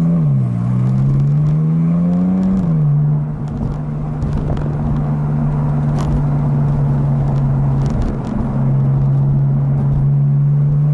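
Porsche engine heard from inside the cabin, revving up and shifting up twice in the first three seconds, then pulling at a steady pitch with a short dip about eight seconds in.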